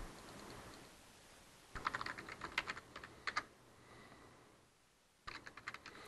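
Faint typing on a computer keyboard in two quick runs of keystrokes, one starting a little under two seconds in and another near the end, as a web search is typed.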